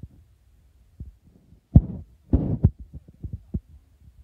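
A series of soft, dull thumps and knocks, the loudest a little under two seconds in, as plastic toy horse figures are handled and set down on carpet.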